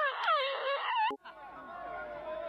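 A girl's high-pitched, wavering whining wail that cuts off abruptly about a second in, followed by the noise of a concert crowd growing louder.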